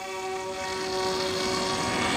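Radio-controlled model airplane's motor and propeller running in flight, one steady whining pitch that slowly gets a little louder.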